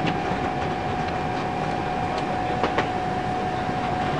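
Steady onboard machinery noise inside a Sturgeon-class nuclear submarine's control room: an even rumble and hiss with a constant high hum, broken by a few faint clicks.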